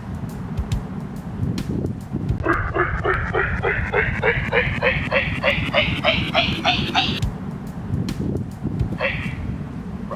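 A handheld megaphone sounds a rapid run of short, pitched "doop" tones, about four a second, climbing steadily in pitch for roughly five seconds. A single short falling blip comes near the end.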